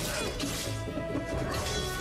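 Dramatic television score with sustained notes, mixed with a crashing impact sound effect at the very start.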